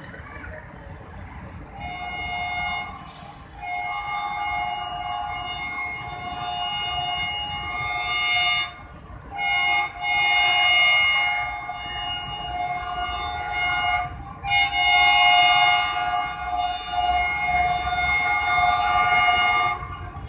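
HGMU-30 diesel locomotive sounding its multi-tone horn in four blasts: a short one about two seconds in, then three long blasts of about five seconds each with brief breaks between. A low engine rumble runs underneath as the train approaches slowly.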